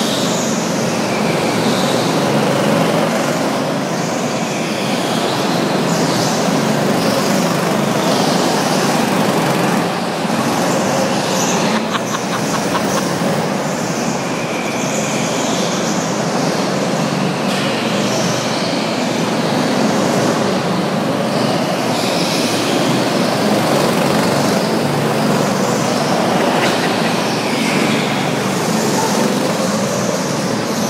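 Go-karts running laps around an indoor track, a continuous motor din in the enclosed hall with individual karts rising and fading as they pass.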